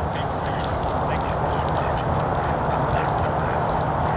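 Mallard ducks quacking, over a steady outdoor background noise.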